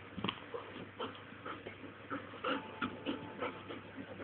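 Old English Sheepdog puppy making a run of short, irregular vocal sounds while playing with her ball.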